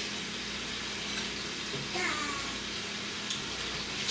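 Quiet kitchen room tone with a low steady hum, and a brief faint call from a small child about halfway through. A light click follows shortly after.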